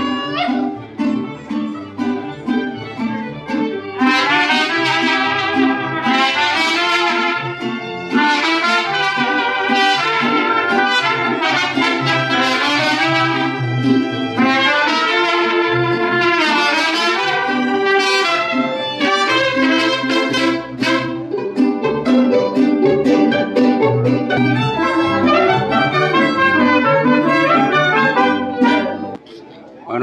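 Mariachi band playing, with trumpets carrying the melody over violins, guitars and the bass guitarrón. The music stops abruptly just before the end.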